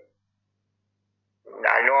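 Speech only, over a video call: a man's voice trails off, there is about a second and a half of dead silence, and he starts speaking again near the end.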